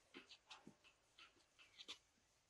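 Near silence: outdoor quiet with a few faint, short clicks and ticks scattered through the two seconds.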